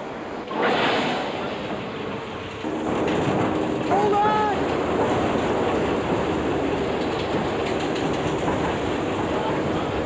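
Wind machines, a jet engine and large fans, blasting a stage set with a loud, continuous rush of simulated tornado wind. A steady drone joins the rush a little under three seconds in, and a short wavering high tone sounds about four seconds in.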